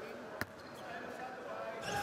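A single sharp bounce of a basketball on a hardwood court, about half a second in, over faint gym room tone.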